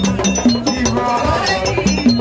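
Haitian rasin (vodou roots) music played live: drums and wood-block-like percussion keep a steady beat under a sung melody.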